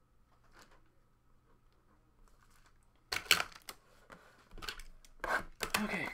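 A trading-card hobby box being handled and opened: after a quiet start, cardboard and wrapping rub, scrape and tear in a few short bursts from about three seconds in.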